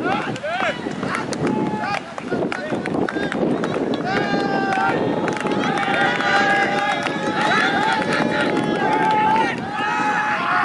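Overlapping voices of people talking and calling out in the open air, a steady busy chatter that grows denser about halfway through.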